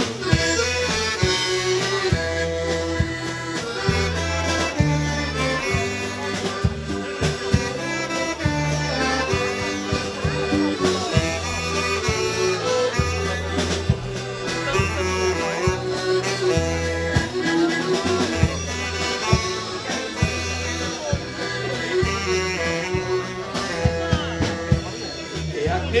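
Folk dance band playing an instrumental passage between sung verses: a quick melody over a steady, repeating bass beat.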